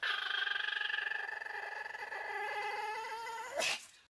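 A Pomeranian whining in one long, slightly wavering high-pitched whine lasting about three and a half seconds. A short, sharp burst of sound follows near the end.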